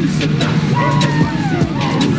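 Documentary soundtrack playing: a car engine running under a street crowd's shouting, with music underneath.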